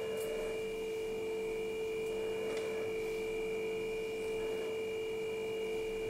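A steady electrical hum with two high, thin steady tones above it, unchanging throughout. Faint rustles of a cotton handkerchief being unfolded by hand.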